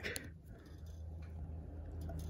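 Bass guitar tuning machine being turned by hand to bring a loosened string back up to tension. It is faint: a click just after the start, then a low steady hum that slowly grows louder.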